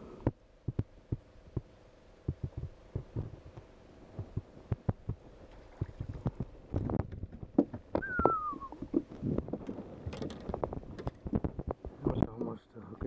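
Irregular clicks and knocks of a small fish being reeled to the boat and swung aboard, turning into denser thumping from about seven seconds in as it lands and flops on the deck. A brief falling squeak comes about eight seconds in.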